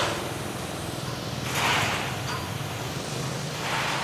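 Dekton DK-CWR2300FB electric pressure washer running with a steady low hum, its mist spray hissing against a motorbike in three short bursts: at the start, about a second and a half in, and near the end.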